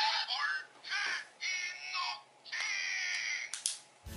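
Electronic sound effects from a toy's small speaker: four short, tinny bursts of calls with sliding pitch, separated by brief gaps.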